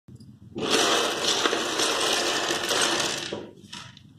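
Many small plastic building blocks clattering and rattling against each other for about three seconds, dying away near the end.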